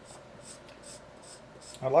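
Pencil scratching across drawing paper in repeated short sketching strokes, faint.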